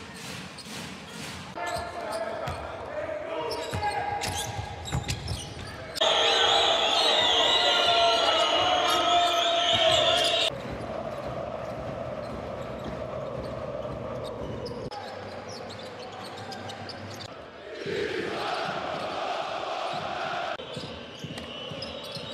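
Basketball game broadcast audio: a ball being dribbled on a hardwood court, with arena voices and commentary behind it. The clips cut abruptly from one to the next, and a louder stretch of about four seconds sits in the middle.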